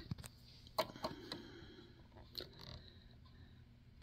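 A few faint, sharp clicks spread through a quiet stretch: small handling sounds of fingers on a sewing machine's needle and presser-foot area.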